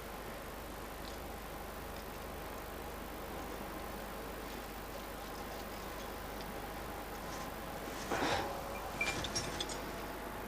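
Steady low hiss with faint sustained tones underneath. Near the end comes a short scrape, then a few light metallic clinks: a rock climber's gear rack knocking as he moves up a crack.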